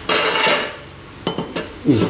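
Kitchen containers and plastic juicer parts clattering as they are handled on the counter: a clatter in the first half second, then two light clicks.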